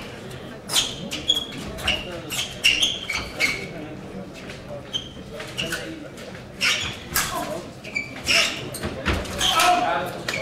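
Fencers' shoes squeaking and stamping on the stage piste during épée footwork and lunges: a scattered run of short squeaks and sharp stamps.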